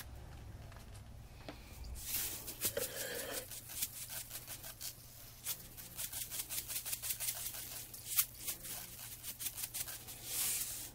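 Coarse sea salt pouring from a box into a plastic tub: a rapid, uneven patter of grains that starts about two seconds in and comes in spurts.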